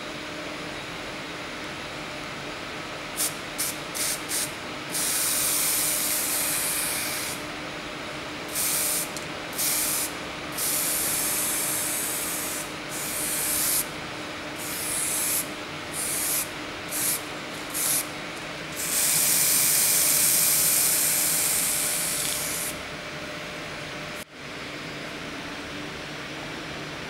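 Aerosol can of Spray.Bike primer spraying in many hissing bursts, from quick puffs to passes of several seconds, the longest near the end. An extraction fan runs steadily underneath.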